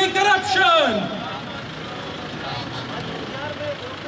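A man chanting a protest slogan through a microphone and loudspeaker: a long held, steady-pitched shout that slides down in pitch and fades about a second in. Quieter background crowd noise follows until the end.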